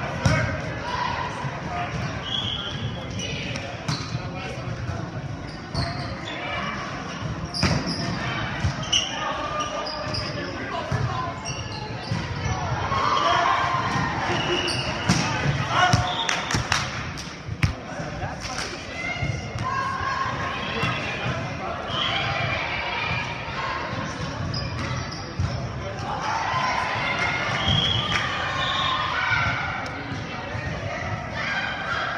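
Indoor volleyball play on a wooden gym floor: repeated sharp slaps of the ball being hit and striking the floor, mixed with players' shouted calls and chatter.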